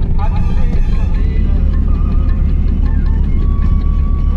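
An Odia bhajan (devotional song), sung with accompaniment, playing on a car's sound system over the steady low rumble of the moving car.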